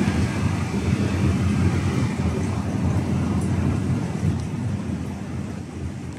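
Steady low rumble of city traffic noise picked up by a phone's microphone, easing slightly toward the end.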